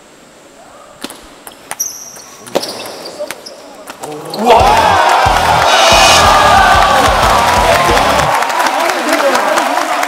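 A table tennis ball clicking sharply off the bats and table in a short rally, several separate clicks. From about four and a half seconds in, loud edited-in music with a heavy beat takes over.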